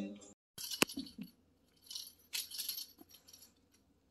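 Feather wand cat toy being waved and batted by kittens: a sharp click about a second in, then a few short bursts of light rattling and rustling.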